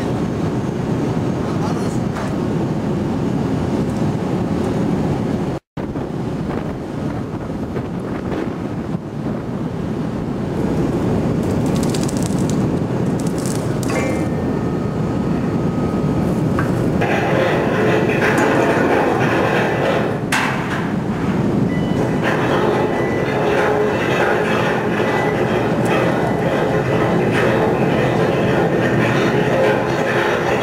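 Continuous heavy deck machinery noise from the Triplex multi deck handler, the hydraulic crane lifting an anchor on its wire. It cuts out for an instant about six seconds in, and grows louder and harsher with a steady whine from a little past halfway.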